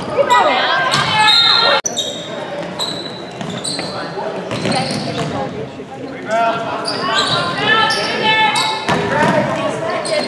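Sounds of a basketball game echoing in a gym: a ball bouncing on the hardwood floor, sneakers squeaking, and players and spectators shouting.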